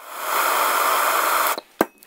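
Handheld gas torch flame hissing steadily while it heats a razor blade. The hiss cuts off about one and a half seconds in, and a single sharp click follows near the end.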